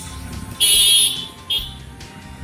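A loud, high-pitched buzzing tone sounds for about half a second, then a second, much shorter one about a second in.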